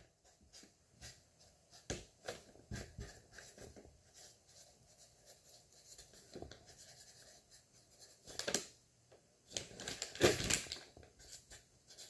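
A pen writing on the paper side of a peel pack: a run of short, faint scratching strokes, with a couple of louder handling noises near the end.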